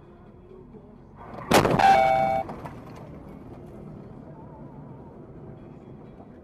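Head-on car collision: a sudden loud crash about a second and a half in, followed by under a second of crunching with a brief steady tone ringing over it, then a lower steady hum of road noise.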